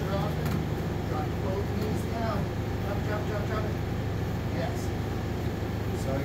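Steady hum of running fans, with faint voices talking in the background.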